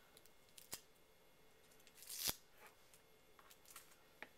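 Faint handling of a plastic action figure: a sharp click, then a short scrape ending in a snap about two seconds in, and a few small ticks near the end, as parts are fitted together.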